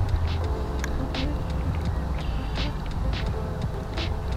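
Baitcasting reel being reeled in: a faint gear whir with short clicks, under a steady low rumble.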